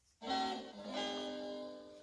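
Guitar sound effect from a sound book's electronic button panel: a short recorded guitar clip, two strums about a second apart, fading out.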